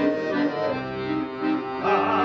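Piano accordion playing a short melodic interlude between sung lines. A group of men's voices comes back in near the end.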